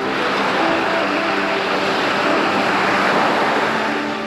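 Steady rushing of small waves washing onto a sandy shore, swelling slightly near the end, with quiet background music underneath.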